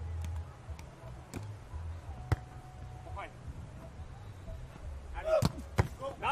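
Beach volleyball being hit: one sharp, loud smack of a serve about two seconds in, then two quicker hand contacts near the end as the rally starts, over a low wind rumble on the microphone.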